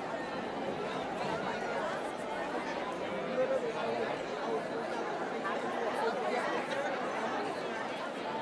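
Dense chatter of a large crowd of guests, many voices talking over one another at a steady level.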